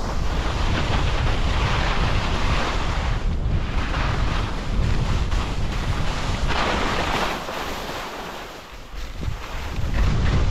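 Wind buffeting the microphone of a skier's camera at speed, with the hiss of skis scraping and carving across the snow swelling and fading in surges as the turns go. The sound eases off briefly about eight seconds in, then picks up again.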